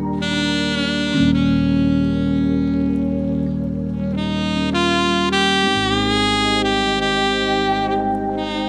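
Saxophone playing a slow melody of long held notes, with a quicker run of notes partway through, over sustained backing chords and bass. The chords change about a second in and again near six seconds.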